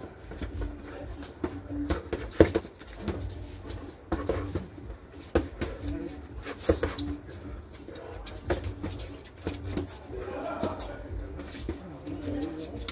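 Boxing gloves landing punches in sparring: a scattered series of sharp slaps and knocks, the loudest about two and a half seconds in.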